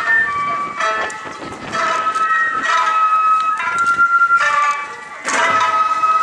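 Japanese festival hayashi music played on a float: a bamboo flute plays long held high notes over repeated taiko drum strikes that come in groups about once a second.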